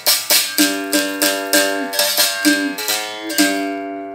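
Berimbau, the gourd-resonated musical bow of capoeira, struck with its stick about three times a second, with the caxixi rattle sounding on each stroke. The ringing notes step between pitches as it plays a rhythm variation plainly, without the effect of the stone pressed against the wire.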